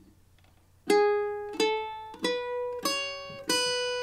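Cavaquinho playing the first notes of a solo melody: five single plucked notes about two-thirds of a second apart, starting about a second in, the last one left ringing.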